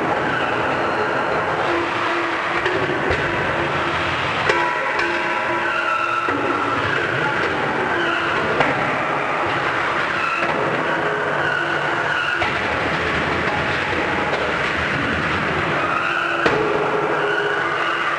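Combat robots running in an arena: the whine of a spinning weapon and drive motors held at several pitches that shift every few seconds, over a dense noisy background, with a few sharp knocks.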